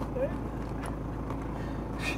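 Toyota Prado 90-series engine idling steadily, a low hum heard from inside the cabin while the vehicle sits stopped on the rocks.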